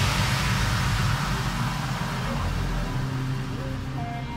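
Background electronic dance music fading down into a hissing wash, with the first notes of a gentler track coming in near the end.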